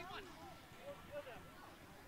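Faint, distant voices calling out briefly during youth soccer play, with no nearby speaker.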